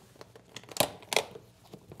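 Handling noise as a guitar case is picked up from the floor: faint rustling with a few short scrapes and knocks, the two sharpest close together about a second in.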